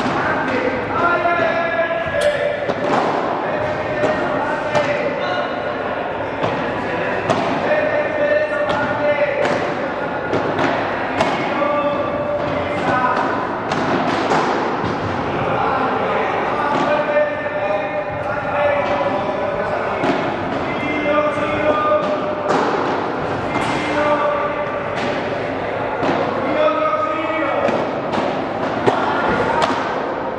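Padel rally: a run of sharp thuds as the ball is struck by the rackets and bounces off the court and glass walls. Long held notes from a voice run under them.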